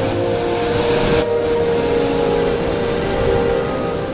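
Steady wind noise on the microphone mixed with surf breaking on the rocks below.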